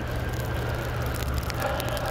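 Steady low rumble of outdoor background noise, with a few faint ticks in the second half.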